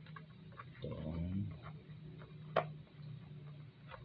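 Small clicks and ticks of hands handling a ribbon-tied cardboard gift box, with one sharp click about two and a half seconds in, over a steady low hum.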